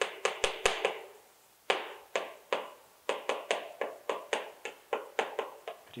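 Chalk tapping and clicking against a chalkboard as words are written: a quick, irregular run of sharp taps, pausing briefly about a second in, then going on until near the end.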